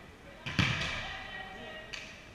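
A volleyball struck hard by hand about half a second in, a sharp slap that rings on in the gym's echo, followed by a lighter second hit near the end.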